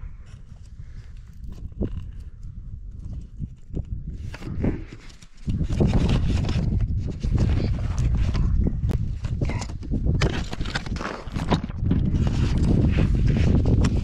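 Close rustling, scraping and knocking of clothing, gear and a hand against a body-worn camera, loud and irregular from about five and a half seconds in, after a quieter stretch of scattered clicks.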